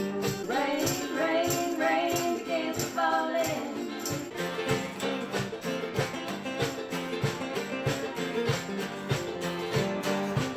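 Acoustic guitars strummed in a steady beat, with a voice singing a melody over them for the first few seconds before the guitars carry on alone.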